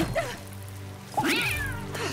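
A cat meowing once about a second in, a single cry that rises and then falls in pitch, over a low, steady music drone.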